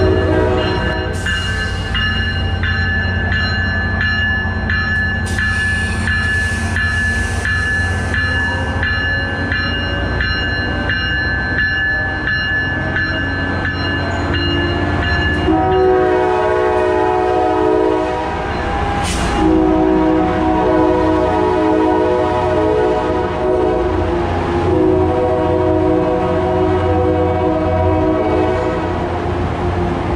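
Brookville BL36PH diesel-electric locomotive and its bilevel coaches passing close by, the engine running with a steady low hum. For the first half a ringing tone repeats over and over; about halfway through a horn sounds in a long chord of several tones, with one sharp sudden noise a few seconds after the horn begins.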